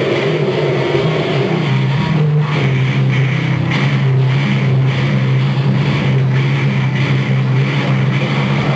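Live rock band playing loud and heavily distorted: a sustained low distorted guitar chord drones, broken by short gaps every half second to a second.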